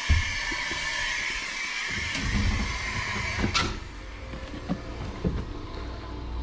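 A motorhome's entry door opening with a steady hiss that ends in a sharp click about three and a half seconds in. Scattered knocks of stepping and handling follow as the coach is left.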